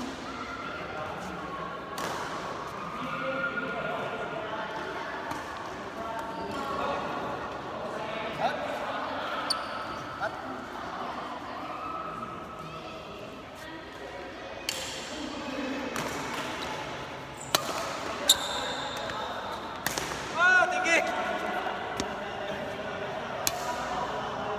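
Badminton rally: rackets smacking the shuttlecock in sharp, irregular hits, echoing in a large hall, with brief squeaks of shoes on the court floor about twenty seconds in.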